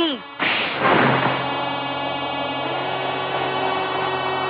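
A sudden loud booming hit, a dramatic film sound effect, that fades into a long steady ringing drone of held tones, like a gong or a sustained musical chord.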